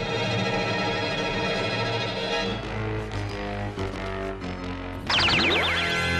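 Cartoon background music: held chords, then a short stepped run of notes. About five seconds in, a loud wavering tone falls steeply in pitch.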